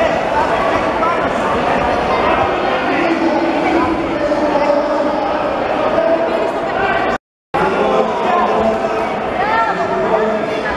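Crowd of spectators and coaches shouting and talking over one another in a large hall, many voices overlapping at once. The sound cuts out completely for a moment about seven seconds in.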